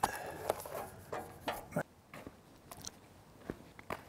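A large sheet of cardboard being handled and pressed flat against a shotgun pattern plate. It makes an irregular run of short crinkles, taps and scrapes.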